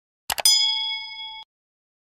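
Sound effect of a mouse click, a quick double click, followed by a bright bell ding that rings for about a second and cuts off suddenly.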